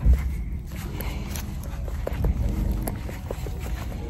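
Footsteps and rustling while walking among hay bales, over a steady low rumble on the phone's microphone, likely wind or handling.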